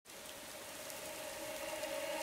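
A soft, rain-like hiss with a faint held tone, slowly swelling in loudness: an intro sound effect that builds into the opening music.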